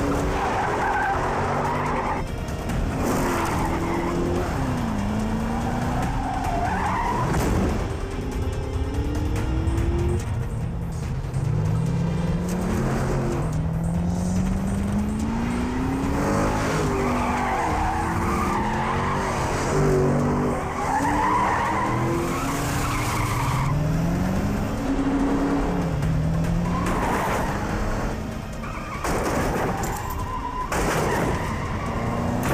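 Car engines revving hard under acceleration, the pitch climbing and dropping back again and again as the gears change, with tires squealing and skidding at intervals.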